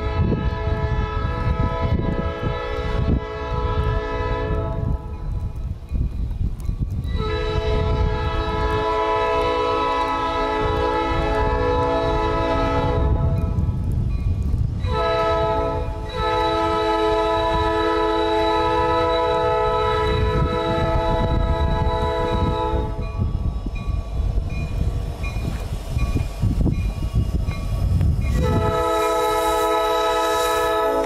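Canadian National diesel locomotive's air horn sounding four long chord blasts as the train approaches, with a few seconds between blasts; the third blast is the longest.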